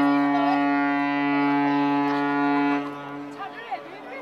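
A ship's horn giving one long, steady, low blast that stops about three seconds in, with people's voices chattering in the background.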